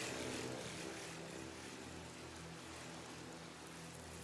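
A steady engine drone under an even hiss, like an aircraft passing, with no change in pitch.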